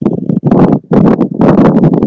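A man's voice talking without pause; the words are not made out.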